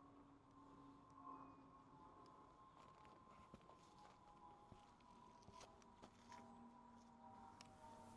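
Near silence, with a few faint, scattered clicks and taps.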